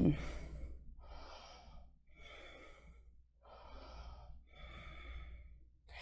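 Soft, audible breathing of a yoga practitioner holding a one-legged balance: about five slow breaths, each about a second long, with short pauses between them.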